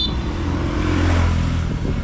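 A motor vehicle passing on the street, its engine rumble and road noise swelling to a peak about a second in and then easing off.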